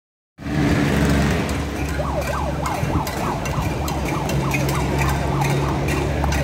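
A siren yelping in a fast rising-and-falling wail, about four cycles a second, starting about two seconds in, over a low steady drone.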